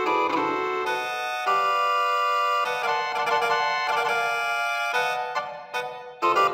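Electronic keyboard music from MIDI instrument sounds played by body movements: sustained chords changing about every second, breaking into shorter separate notes near the end.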